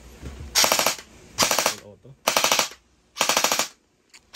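MP5-style electric gel blaster with metal gears and a metal piston firing four short full-auto bursts, each a fast rattle of about half a second. It is being test-fired with a stiffer M90 upgrade spring.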